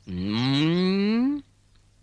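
A single long, drawn-out vocal call that rises steadily in pitch for about a second and a half, then stops.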